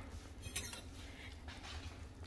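A metal spoon clinking faintly a few times against the slow cooker pot as it dips into the soup.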